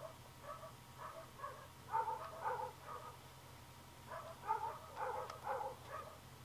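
Roosters making soft, low clucks in short strings, one bout about two seconds in and another about four to five and a half seconds in, over a faint steady hum.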